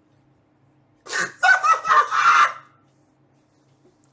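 A man's loud, high-pitched laugh in several quick, cracking bursts, starting about a second in and lasting about a second and a half.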